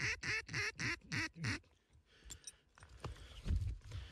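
A duck call blown in a quick, even run of about six quacks, which stops about a second and a half in. Faint rustling and a few small clicks follow.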